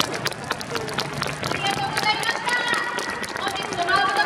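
A stadium crowd applauding: many scattered hand claps, with indistinct voices mixed in.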